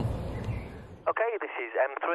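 Light outdoor background noise for about a second, then a sudden cut to a man's voice heard over a two-way radio link. The voice is thin and narrow in range, as from a radio speaker, and comes through clearly with no hiss: his UHF test call from half a mile out, received back at base.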